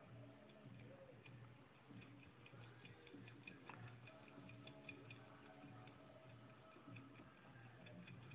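Near silence with faint, even ticking about four times a second through the middle stretch, over a low hum.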